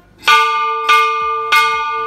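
Large hanging metal temple bell struck three times by its clapper, swung by hand, the strikes coming about 0.6 seconds apart, with each strike ringing on over the last.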